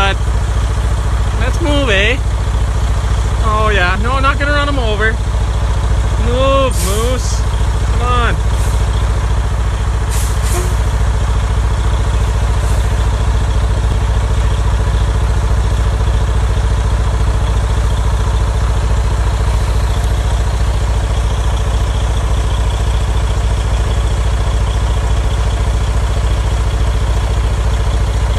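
Truck engine idling, a steady low drone that does not change. A few brief voice-like calls rise and fall in the first eight seconds.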